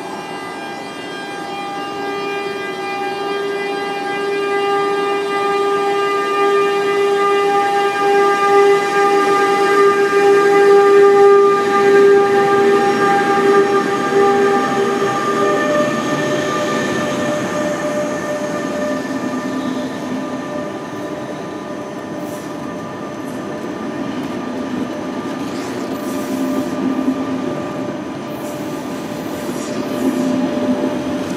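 A DB Class 186 (Bombardier Traxx) electric locomotive passes close by with a steady whine from its traction equipment, growing louder as it approaches. About 16 seconds in, as the locomotive goes past, the whine shifts to a lower pitch, and then the passenger coaches roll by with rumbling wheels.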